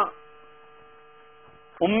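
Faint steady electrical hum, one unchanging tone, heard in a pause between spoken sentences.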